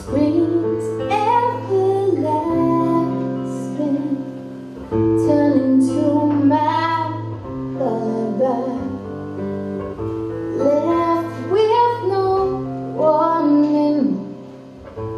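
Live acoustic music: steel-string acoustic guitar chords ringing under a woman's voice singing a sliding, wordless-sounding melody in several swelling phrases.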